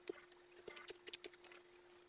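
Faint, irregular small clicks and scratchy handling noises over a steady faint hum.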